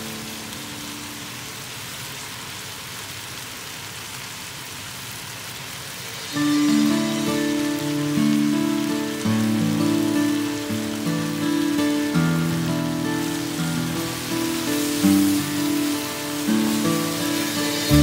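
Chicken and vegetables sizzling in a hot wok, a steady hiss. Background music with sustained melodic notes comes in about six seconds in and plays over the sizzle.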